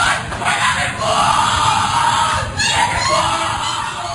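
Covert recording of a Skull and Bones initiation ceremony: voices shouting and screaming on a harsh, noisy recording, with a brief dip about two and a half seconds in.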